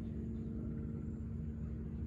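A steady low engine hum that holds an even pitch throughout.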